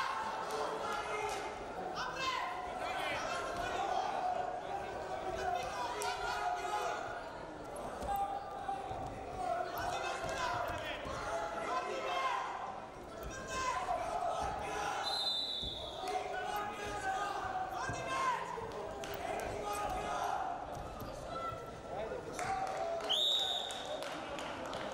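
Wrestling match in an arena hall: indistinct voices calling out over repeated thuds and slaps of the wrestlers on the mat, with a short high referee's whistle blown twice, the second just as the match clock runs out.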